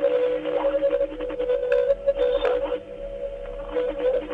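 Strange electronic tones coming from a phone call on a smartphone: a steady, wavering tone with a couple of rising swoops, thin and cut off at the top like audio heard down a phone line.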